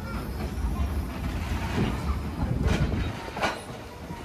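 NZR Ab class 4-6-2 steam locomotive and tender rolling slowly past at close range, with a few sharp knocks in the second half. Heavy wind buffets the phone microphone as a low rumble that eases about three seconds in.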